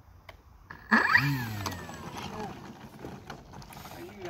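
Electric motor of a large RC aerobatic plane (Flex RV8, 70-size motor on a 6S battery) throttled up in a sudden burst about a second in: the propeller whine climbs sharply, then winds down over the next second or so. A man laughs over it.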